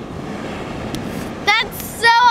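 Steady wash of surf on a beach, an even rushing noise, with a brief high-pitched voice exclamation about one and a half seconds in.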